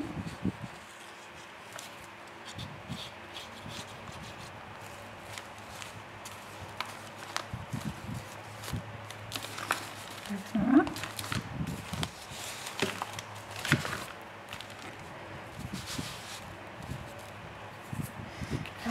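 Paper being handled and pressed down on a craft table: scattered soft taps, knocks and rustles of journal pages and card, over the steady hum of an electric fan.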